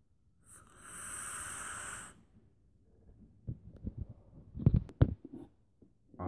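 A drag on the atomizer of a brass hybrid mechanical vape mod: about a second and a half of airy hiss as air is drawn through it, starting about half a second in. Then a run of knocks and clicks from handling things on a table, the loudest near the end.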